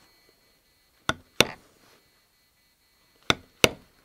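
A basketweave leather stamping tool struck with a mallet, driving the pattern into holster leather laid on a granite slab. It gives sharp knocks in two pairs, one pair about a second in and the other near the end.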